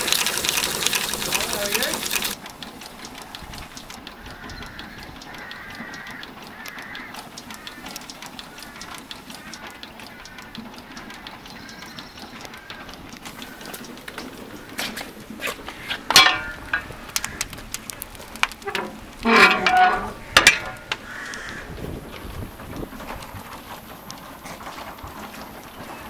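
A Charles D. Holmes duplex steam feedwater pump running with loud steam hiss and gushing water, just after being primed; it cuts off abruptly about two seconds in. After that, a quieter background with distant voices and a few short louder calls.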